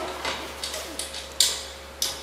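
Small metal hardware clinking as a washer is fitted onto a bolt: a few light clicks, then a sharper click about a second and a half in.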